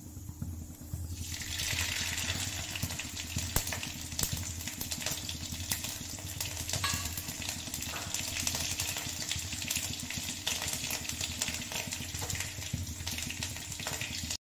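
Whole spices (cumin, black mustard seeds, a dried red chilli and green chillies) sizzling in hot mustard oil in a kadhai, starting about a second in as they hit the oil, with many small crackles and pops from the mustard seeds.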